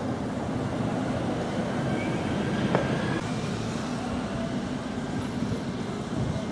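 Steady, even outdoor background noise of a town square, mostly low in pitch, with a single sharp click a little before the middle.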